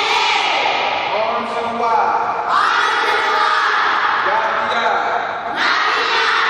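A group of young children calling out together in loud, drawn-out phrases in a gym hall, a new phrase starting about every three seconds.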